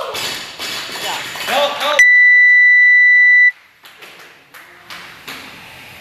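Gym workout timer sounding one long, steady, high electronic beep of about a second and a half, marking the end of the timed work interval. Voices and shouts come before it, and only a quiet murmur after it.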